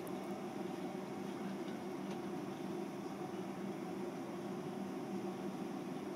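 Steady room tone: an even, unbroken hum of room ventilation or equipment fans, with no distinct events.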